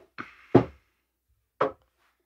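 Three short knocks of hardware synthesizers, an Elektron Digitone and Analog Rytm, being moved and pushed together on a wooden tabletop. The second knock is the loudest.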